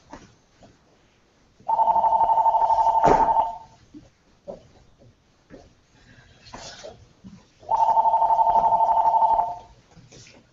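Electronic telephone-style ringer trilling on two steady tones: two rings of about two seconds each, some six seconds apart. A single sharp thump sounds about three seconds in, during the first ring.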